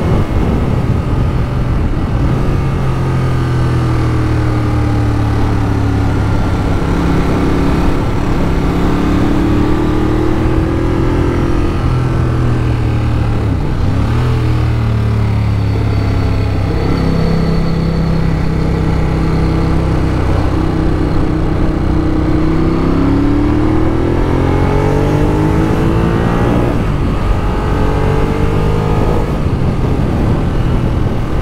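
Ducati Monster 821's L-twin engine pulling along a winding road, its note rising under acceleration and dropping at each gear change, with a long climbing pull near the end.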